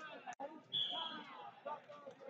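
Overlapping voices of coaches and spectators calling out in a large gymnasium around a wrestling mat, with a brief high-pitched tone just before the one-second mark. The sound cuts out for an instant about a third of a second in.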